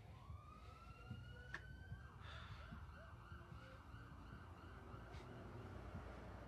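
Faint siren wailing, its pitch rising slowly over the first two seconds, over quiet room tone with a few soft clicks.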